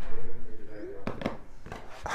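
Two sharp knocks about a second in, over handling noise and a faint voice.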